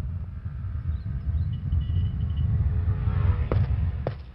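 Low, steady rumble on a film fight soundtrack, with a single short knock about three and a half seconds in.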